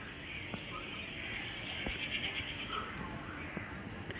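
Faint bird calls over a steady hiss.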